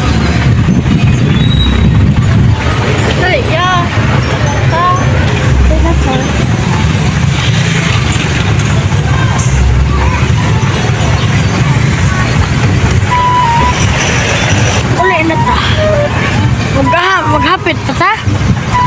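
Wind rumbling steadily on a phone microphone, with voices of people outdoors behind it.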